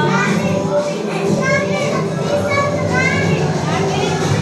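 Young children's voices chattering and calling out over music playing underneath.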